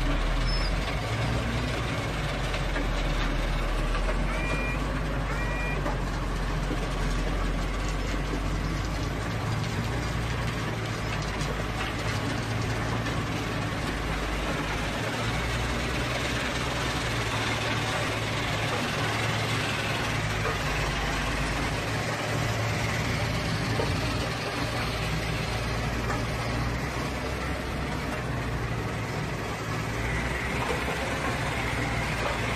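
Heavy machinery running steadily, heard from inside an equipment cab beside a working IMS MS842W mobile screening plant: a continuous engine drone with rumble and rattle. Two short high beeps sound about four and five seconds in.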